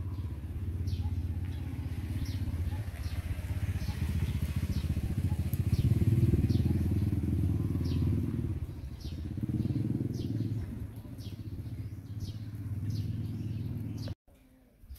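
A motor vehicle engine running with a steady low rumble, growing louder around the middle and then easing off. Faint short high chirps repeat about once a second over it.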